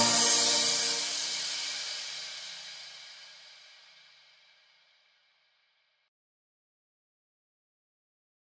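Background music ending on a final chord with a cymbal crash, ringing out and fading away over about five seconds.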